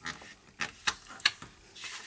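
Transparent mylar sheet being folded and pressed flat by hand, giving several short crackles and a brief rustle as the crease is made.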